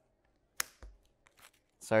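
Trading cards being handled: one sharp card snap about half a second in, then a few faint soft taps and rustles of cards.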